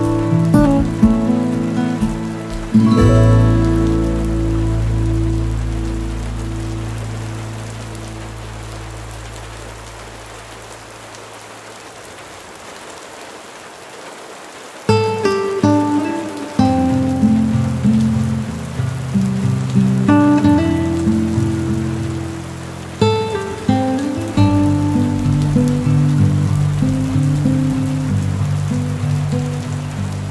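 Steady rain on a windowpane mixed with soft instrumental music. A few seconds in, the music holds a long chord that slowly fades, leaving only the rain for a few seconds mid-way, and then picks up again with a run of gentle notes.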